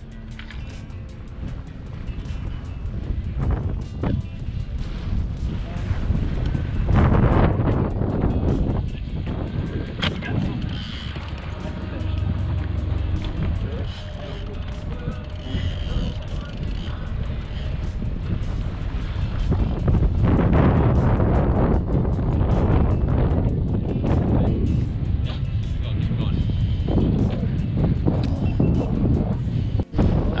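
Wind buffeting the microphone in a low, steady rumble that swells and eases, with indistinct voices and background music.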